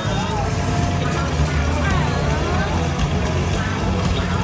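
Amusement arcade din: a steady low rumble with electronic jingles and sliding tones from the game machines, and voices in the background.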